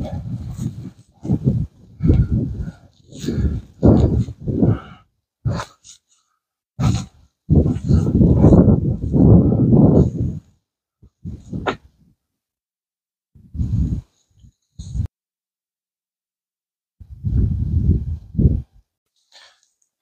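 Strong wind buffeting the microphone in irregular gusts: deep rumbling blasts lasting from a fraction of a second to a few seconds, broken by short dead-silent gaps.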